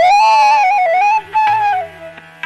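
Bansuri (bamboo flute) playing a Hindustani classical phrase: a steep upward glide into a held, ornamented note that slides down near the end. It sits over a steady drone, with a few tabla strokes.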